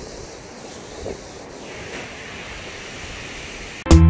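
Steady wash of sea surf breaking on the beach. Loud music with plucked guitar notes cuts in abruptly at the very end.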